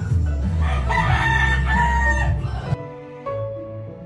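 A rooster crowing: one long crow of about a second and a half that stops abruptly a little under three seconds in, leaving soft background music.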